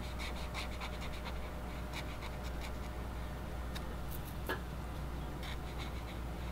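Black brush-tip marker stroking and scratching on paper while filling in an area solid black: quick, closely spaced strokes in the first second and a half, then sparser strokes, with one sharper tap about four and a half seconds in, over a steady low hum.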